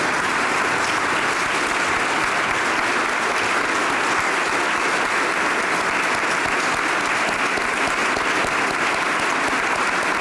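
A roomful of people applauding steadily after a speech: many hands clapping, sustained without a break.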